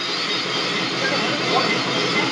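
A steady rushing noise with no clear voice or tune in it.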